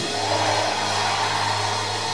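Background music holding a steady sustained low drone note, with an even hiss above it.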